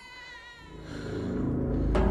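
A newborn baby's brief wavering cry, falling slightly in pitch and fading after under a second. Then a low rumble of trailer music swells steadily louder.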